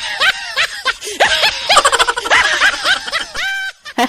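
A woman's high-pitched laughter: a quick run of short laughs, about four or five a second, ending in one longer held note near the end.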